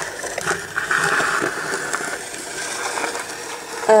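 Steady rain falling, a continuous hiss.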